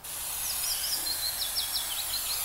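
Birds chirping in short calls over a steady high hiss.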